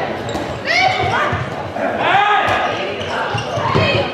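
Indoor handball play: the ball bouncing on the sports-hall floor and players' footsteps, with shouts and short squeals, echoing in the large hall.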